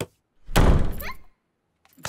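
A loud, heavy thud about half a second in, dying away over about a second.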